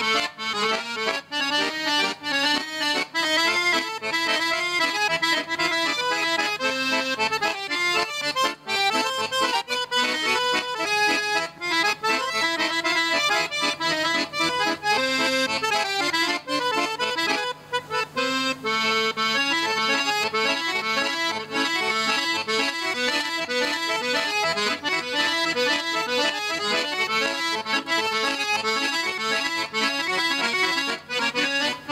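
Chromatic button accordion played solo in fast runs of notes, with a short break about two-thirds of the way through.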